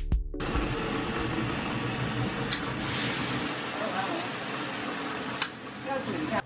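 Background music stops just after the start and gives way to a steady, dense hiss of ambient noise with faint voices in it, which cuts off suddenly at the end.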